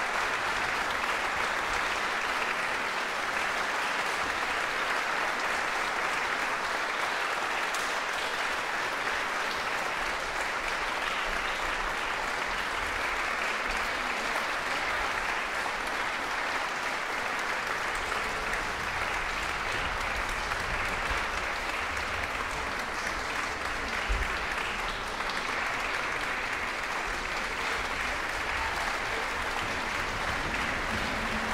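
Audience applauding steadily, a continuous even clatter of many hands, with one low thump about two-thirds of the way through.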